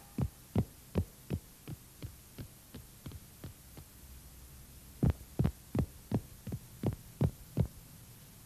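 Cartoon footstep sound effect: even, soft thuds at about three a second. A first run fades away over the first few seconds; after a short pause, a second, louder run of about eight steps follows.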